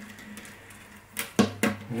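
First (high E) string of a classical guitar being drawn through the hole in the bridge tie block: faint rubbing, then a few short scrapes and clicks of the string against the bridge about a second in.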